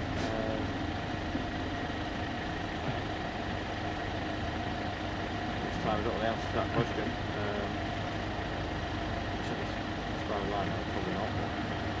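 A vehicle engine idling in a steady low hum, with faint voices talking in the background.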